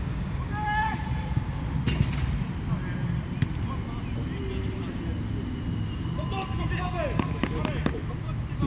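Distant shouts of players on a football pitch over a steady low rumble, with a couple of sharp knocks, the loudest about two seconds in and another a little after three seconds.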